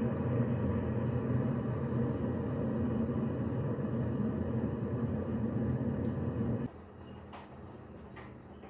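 Water boiling in a glass electric kettle, a steady rumble. It cuts off sharply near the end, leaving a much quieter background with a few faint clicks.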